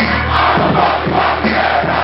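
A hip-hop beat with a long held deep bass note playing loud over a venue sound system, with a packed crowd shouting and cheering over it.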